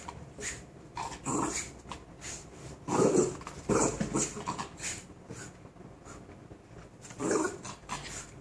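West Highland white terrier growling in several short bursts while playing with and shaking a rope toy, the loudest bursts a few seconds in.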